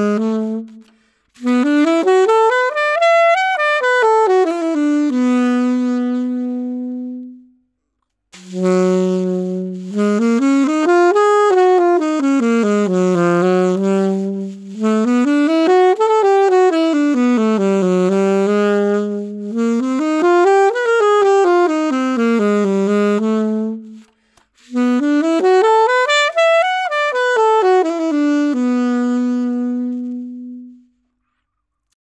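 Yamaha alto saxophones, the YAS-280 and then the YAS-62, playing the same soft phrase in turn. Each phrase climbs and falls in pitch and settles on a held low note, with short breaks for breath between them.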